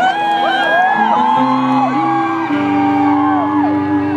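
A live rock band begins a song with sustained chords that change every second or so. Over the music a concert crowd whoops and cheers.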